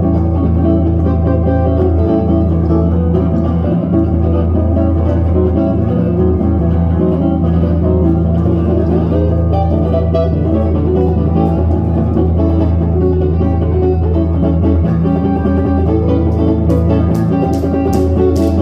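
Live instrumental smooth-jazz band playing: electric guitar carrying the melody over electric bass, keyboard and drums. Near the end, sharp claps about three a second join in, the audience clapping along in time.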